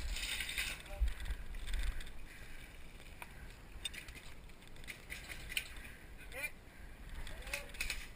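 Footsteps and gear rustling from a player on the move, with a steady wind rumble on a head-mounted camera microphone. Faint distant voices call out near the end.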